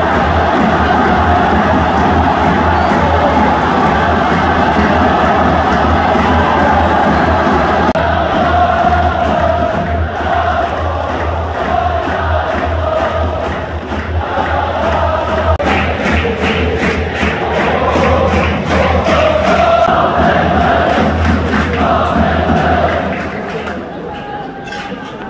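Yokohama F. Marinos supporters chanting in unison across a stadium end, rallying behind their team after conceding, over a steady low drumbeat. From about two-thirds of the way in, sharp rhythmic strokes join the chant.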